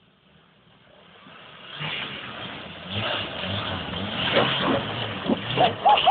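A small 4x4's engine working hard on a steep, loose dirt bank, building from quiet to loud over the first two seconds, with rough knocks in the last couple of seconds as the vehicle tips over onto its side.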